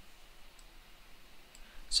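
Two faint computer-mouse clicks about a second apart over quiet room tone.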